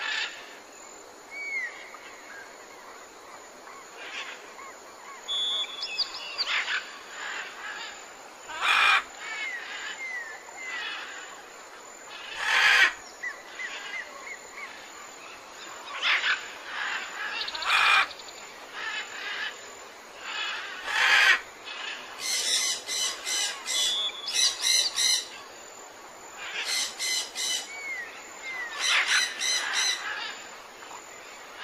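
Birds chirping and calling, with short whistled glides and several louder calls spread through, and bursts of quickly repeated notes in the second half.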